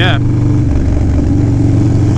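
Harley-Davidson Low Rider S's Twin Cam 110 V-twin, breathing through a Fab 28 exhaust, running steadily under way at road speed.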